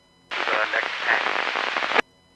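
Two-way radio transmission over a scanner: it keys up about a third of a second in as a loud burst of static with a garbled voice under it, and cuts off abruptly.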